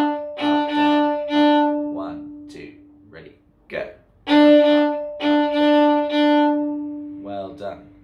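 Violin open D string bowed in a syncopated down-up-up-down-up rhythm, the five-note pattern played twice with a pause of about two seconds between. A man's voice calls the bowing and counts in between the phrases.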